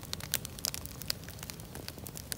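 Wood campfire crackling, with many sharp, irregular snaps and pops from the burning logs over a low steady rumble.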